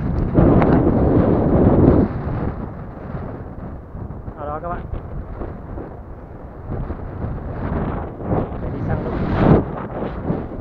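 Wind buffeting the microphone outdoors, heavy in the first two seconds and then lighter and gusting, with a brief wavering call about four and a half seconds in and another gust near the end.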